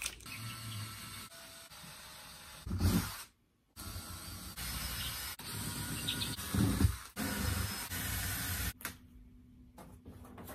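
Handling noises from clearing a wall: stickers being peeled off a door and a road sign being worked loose, heard as rustling and scraping with two dull thumps. The sound comes in short clips joined by abrupt cuts, with a moment of dead silence about three seconds in.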